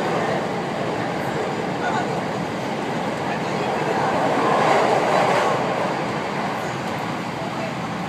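Running noise of a 521 series electric multiple unit heard from inside the passenger car: a steady rumble of wheels on the rails, swelling louder about halfway through.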